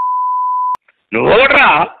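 A steady, single-pitched censor bleep lasting under a second and cutting off sharply, blanking out a word in a recorded phone call. A voice on the call speaks again about a second in.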